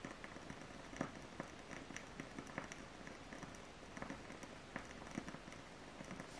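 Faint, scattered little clicks and rustles of tarot cards being shifted in the hands, over quiet room tone.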